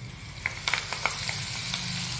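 Fresh curry leaves sizzling in hot oil for a tempering (phodani), with the flame already off. A hiss starts about half a second in and builds, with sharp crackling pops scattered through it.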